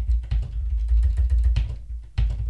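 Computer keyboard typing: a run of quick key clicks over a low rumble.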